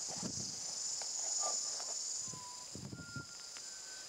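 A steady, high-pitched insect chorus that drops a little past halfway, over irregular low rustling and bumps, with a few faint, short whistled notes.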